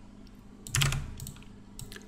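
Computer keyboard keys being pressed: a quick cluster of key clacks about three-quarters of a second in, and a few more near the end.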